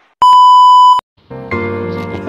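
A loud, steady electronic beep tone of about 1 kHz lasting under a second, starting and stopping abruptly. Shortly after it ends, background music with pitched notes begins.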